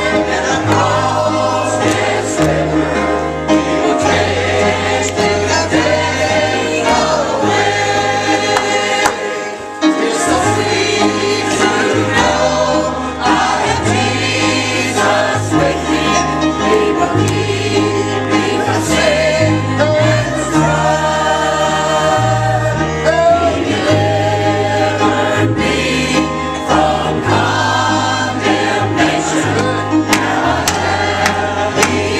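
A church choir singing a gospel hymn, with instrumental accompaniment holding low bass notes that change every second or two.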